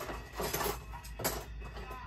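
Light handling noises on a tabletop: a few short rustles and clatters of clear plastic card stands and boxes being moved.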